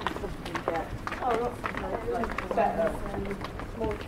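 Passers-by talking in conversation close by, several voices, with footsteps on stone paving.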